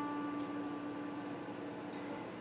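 A single electric guitar note ringing on and slowly dying away, fading out near the end, over a steady hiss.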